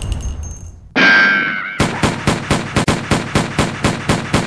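Edited intro soundtrack: the fading tail of a loud boom, then a short whistling tone about a second in. After that a fast, even beat of sharp hits, about five a second, starts up and leads into the music.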